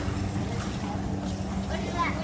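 Store background noise picked up by a phone camera: a steady low hum and rumble with faint voices.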